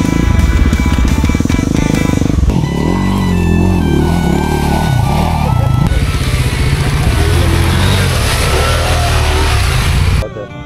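Off-road motorcycle engine running and revving, its pitch rising and falling from a few seconds in, over background music.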